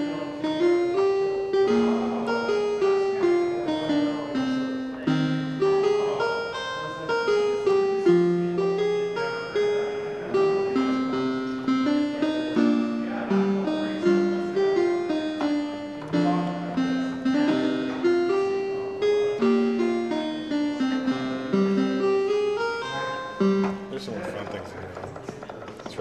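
Commodore 64 SID sound chip playing a piano-preset melody over a lower accompanying line, played live from a Music Port musical keyboard; the notes step up and down at a moderate pace. The playing stops about two seconds before the end, and voices take over.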